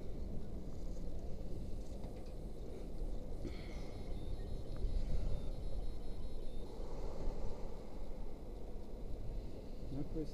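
Wind buffeting the camera microphone at height, a low rumble that rises and falls.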